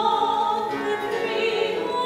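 A classically trained soprano singing sustained notes of a French Renaissance song, accompanied by a Renaissance lute.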